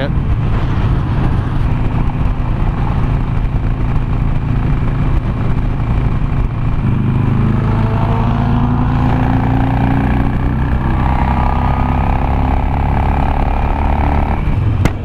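Harley-Davidson Nightster's air-cooled V-twin running at highway speed, under a steady rush of wind noise. About halfway through, the engine note steps up and then climbs gradually as the bike accelerates.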